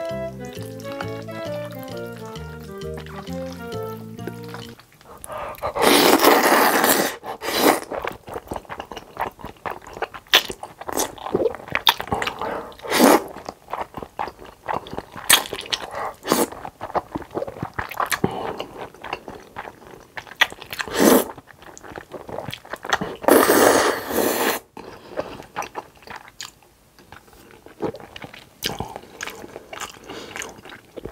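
Background music for the first few seconds, then close-miked eating: long loud slurps of black-bean-sauce noodles about six seconds in and again near twenty-four seconds, with chewing and short sharp bites and smacks in between.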